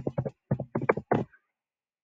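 Typing on a computer keyboard: about ten quick keystrokes over the first second and a half, then they stop.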